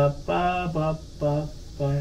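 A man vocalising short sung "ba-ba" syllables in a playful chant-like tune, about five separate notes.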